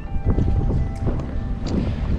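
Wind buffeting an outdoor microphone, a heavy uneven rumble, with faint background music of held notes under it.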